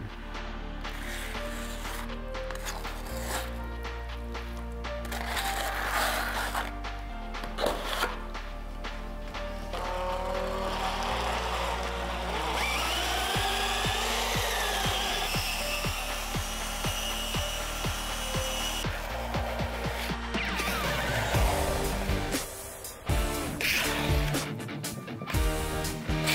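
Background music over an electric drill with a paddle mixer stirring two-component epoxy grout in a bucket.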